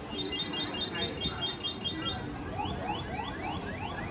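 An electronic alarm sounds. First comes a fast run of short, high beeps, about seven a second. About halfway through it switches to a series of rising whoops, about three a second, and these carry on to the end.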